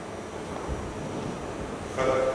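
A steady rushing noise with a low rumble, in a pause between speech: the hall's background noise picked up by the lectern microphone.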